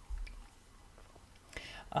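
Quiet handling of a tarot card as it is drawn and laid on a cloth-covered table, with a soft low thump just after the start and faint rustling; a breath and the start of speech at the very end.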